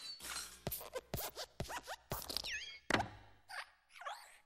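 Pixar desk lamp's hopping sound effects as it jumps on the letter I and stamps it flat: a run of about five sharp knocks and thumps, with short squeaks of the lamp's springy arm and a falling squeak partway through.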